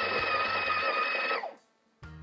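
The Breville Barista Touch Impress's built-in burr grinder running steadily with a whine, topping up a dose that the machine measured as too low; it winds down and stops about one and a half seconds in.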